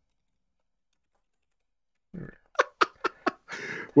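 About two seconds of dead silence, then a short murmured "mm" followed by four quick computer keyboard keystrokes and a brief burst of noise.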